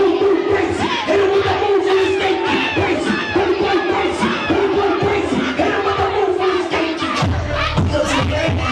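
A crowd of partygoers shouting and chanting together over club music. A heavy bass beat comes in near the end.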